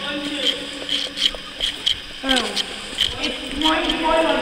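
Footsteps of people walking through a tunnel: short scuffs and clicks about two to three a second, with brief, unclear voices now and then.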